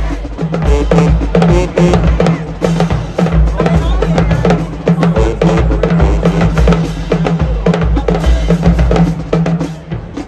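High school marching band drumline playing a percussion break: bass drums and snare drums in a fast, driving rhythm with rim clicks. A low repeated bass note runs under it and stops just before the end.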